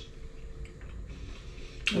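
A man chewing a mouthful of soft bread with his mouth closed: a few faint, short clicks over a low steady hum, then a lip smack near the end as he starts to speak.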